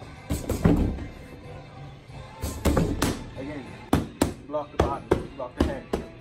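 Gloved punches landing on a freestanding punching bag: about ten sharp thuds in quick groups of two or three, over background music.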